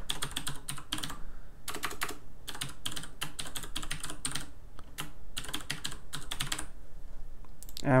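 Typing on a computer keyboard: an irregular run of quick keystrokes with a few short pauses.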